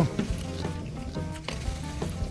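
Background music with a few faint clicks of a man chewing crunchy raw sliced cuttlefish, after a short 'oh' of his voice right at the start.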